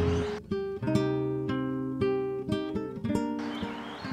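Acoustic guitar music: plucked and strummed chords, each held briefly before the next.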